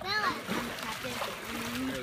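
Pool water splashing and sloshing as players move about in it during a game, after a short laugh at the start.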